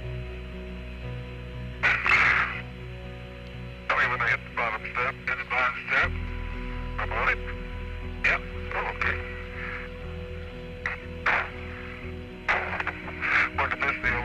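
Short bursts of muffled, narrow-band radio voice chatter from the Apollo 14 crew and ground, with a steady hum and a low music drone underneath.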